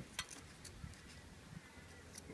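A few faint, sharp clicks and ticks, mostly in the first second, from handling a cut piece of hardened, acetone-treated expanded polystyrene foam over a plaster mould; otherwise quiet room tone.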